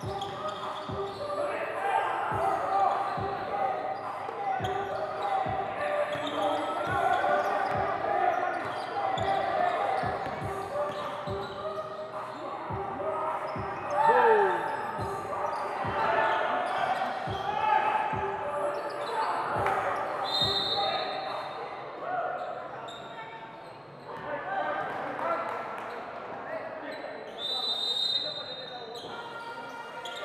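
Basketball game sounds in a large hall: a ball bouncing repeatedly on the court amid a steady layer of players' and spectators' voices. There are a few short high squeaks in the second half.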